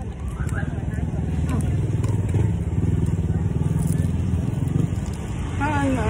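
A motor vehicle engine running close by, its low rumble building about a second in and easing off near the end.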